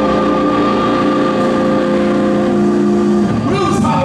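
Live blues band with electric guitar and bass holding one long sustained chord, then a wavering, bending note just before the end.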